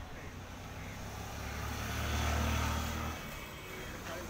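Low, steady engine hum that swells to its loudest about two seconds in and stops abruptly a little after three seconds.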